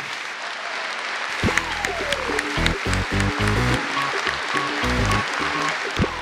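Audience applauding. About a second and a half in, music with a heavy bass beat comes in over the clapping.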